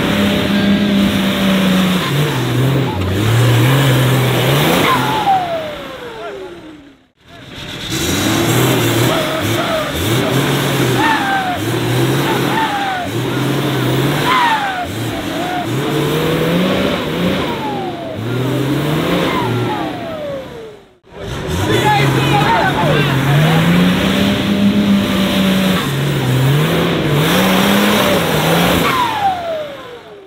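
Nissan Patrol 4x4's diesel engine revving hard in repeated surges, pitch climbing and falling again and again as it works through deep mud. The sound breaks off sharply twice.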